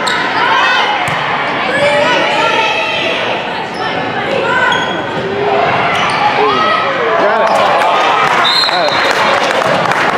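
Indoor volleyball rally: the ball is struck by hands and hits the floor with sharp smacks, over players and spectators calling out and shouting, echoing in a large gym.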